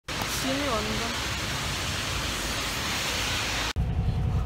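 Steady loud rushing noise, with a person's voice heard briefly about half a second in. Just before the end it cuts abruptly to the low rumble of a car heard from inside the cabin.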